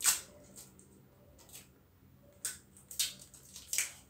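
Brown packing tape being pulled off its roll in short ripping tugs, about five in all, the first the loudest.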